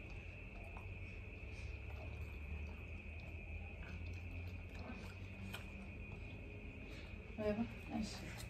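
Crickets chirping in a steady, unbroken high trill over a low hum, with a brief voice near the end.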